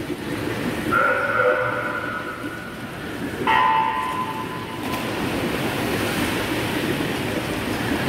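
An electronic race-start beep about a second in, ringing on in the echoing pool hall, then a second tone a couple of seconds later. Both sit over a steady wash of splashing and pool-hall noise as the swimmers race freestyle.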